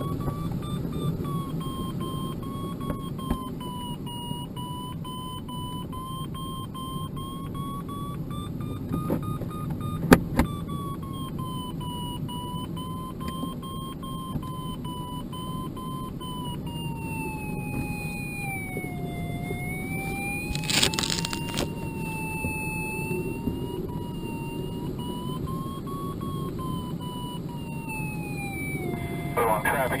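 A glider's audio variometer sounds one continuous tone that slowly wavers up and down in pitch, sinking lowest about two-thirds of the way through and then rising again, over the steady rush of air past the cockpit of a Schleicher ASW-27B sailplane in flight. A couple of sharp clicks come about a third of the way in.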